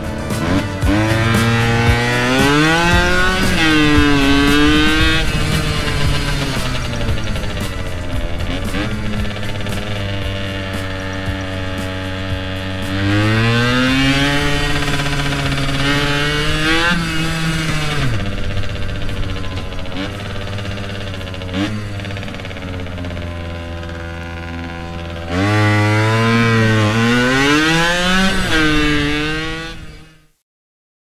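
Motorcycle engine pulling hard several times, its pitch climbing through the revs and dropping back at each gear change, with steadier cruising between the pulls.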